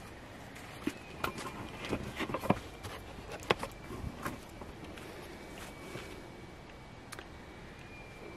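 Footsteps with handling rustle from the hand-held camera, a scatter of sharp clicks and knocks in the first half, then quieter.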